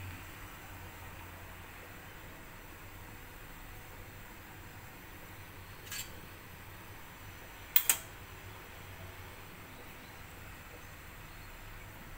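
Quiet kitchen background: a steady low hum with faint hiss, like a running fan. There is a soft click about six seconds in and a sharp double click, the loudest sound, near eight seconds.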